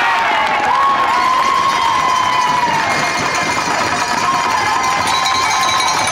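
Spectators cheering and shouting together, with long held whoops, celebrating a goal just scored.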